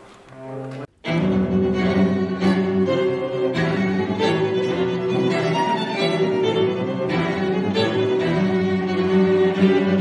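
Chamber ensemble of bowed strings, violins and cello, playing loud, driving contemporary music with sharp accented attacks. A softer opening breaks off suddenly just under a second in, and the full ensemble comes in loud a moment later.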